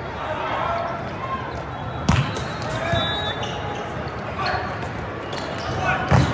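Volleyball rally in a large reverberant hall: a sharp smack of the ball being struck about two seconds in, followed by lighter ball contacts, over a steady murmur of spectators' and players' voices.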